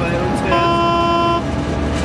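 A Nohab diesel locomotive's horn sounds one steady blast of just under a second, heard from inside the cab over the constant running of the diesel engine, as a warning for the level crossing just ahead.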